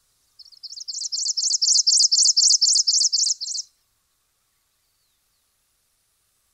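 Carbon-black finch (Phrygilus carbonarius) singing: a fast series of high repeated chirping notes, about four a second for some three seconds, growing louder and then stopping.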